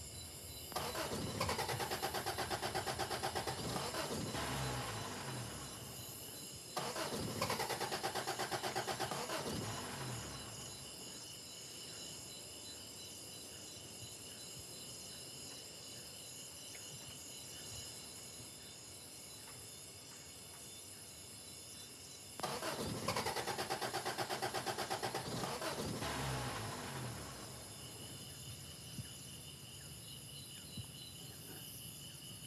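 A pickup truck's engine cranked on its starter three times, in spells of three to four seconds each with fast, even pulsing, without catching. Crickets chirp steadily throughout.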